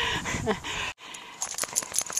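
A short vocal sound at the start, then quick light metallic clicks and jingles, like a dog's collar tags, as the dog moves through deep snow.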